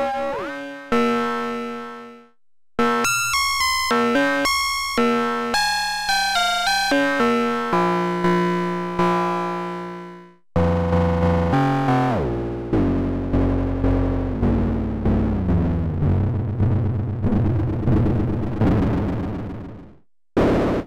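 kNoB Technology SGR1806-20 Eurorack analog percussion module played as a synth voice from a keyboard: three unsynchronized, detuned oscillators through its wavefolder and envelope, giving a quick run of short, decaying notes. About halfway through it turns lower and denser, and its pitch steps downward as the oscillator tuning is turned.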